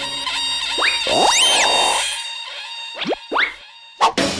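Cartoon comedy sound effects over background music: a rising whistle-like swoop about a second in, a short warbling tone, then two quick rising swoops near the end.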